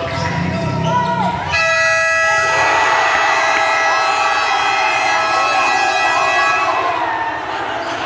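Basketball game buzzer sounding one long steady tone, starting about a second and a half in and lasting about five seconds, over a crowd cheering: the end-of-game horn.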